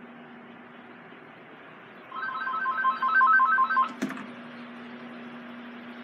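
A telephone ringing electronically: a rapid trill of short, repeated beeping tones lasting about two seconds, starting about two seconds in, over a steady low hum. A sharp click follows just as the ringing stops.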